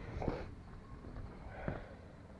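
A person's breathing close to the microphone: two faint, short breaths or sniffs about a second and a half apart, over a steady low rumble.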